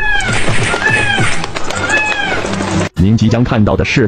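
Three high, arching cat-like calls, about one a second, over background music, with a short spoken word near the end.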